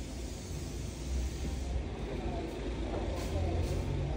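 Steady low rumble of background vehicle noise, with a faint mid-range clatter from about a second in.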